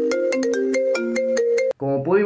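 Short electronic transition jingle: a quick run of bright, ringtone-like notes at about five a second, which cuts off abruptly near the end as a man's voice begins.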